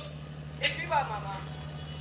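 A short, faint spoken fragment about half a second in, over a steady low hum, in a lull between speeches.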